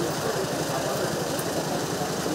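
A Toyota SUV's engine idling steadily, with the murmur of a surrounding crowd.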